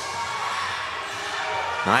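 A basketball being dribbled on a hardwood court over the steady background noise of an indoor gym.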